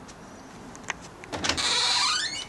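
A door handle clicks, then a glass sliding door is pulled open, its runners squealing in a pitch that falls steadily as it slides.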